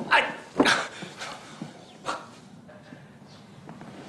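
A dog barking three times, the barks short and spaced unevenly, the last one fainter.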